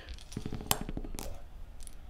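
A pair of six-sided dice rattled in a hand and rolled out onto a cloth gaming mat: a quick run of soft clatters and clicks lasting under a second, with a couple of sharper clicks as they tumble and settle.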